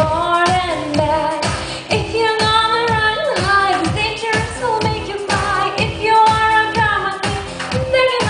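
A woman singing into a microphone over backing music with a steady drum beat.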